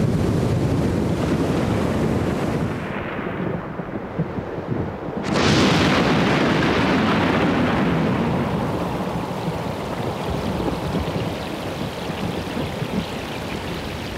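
Storm at sea: a dense roar of rough water and rumble, then about five seconds in a sudden loud crash that fades away slowly over several seconds, like a thunderclap or a breaking wave.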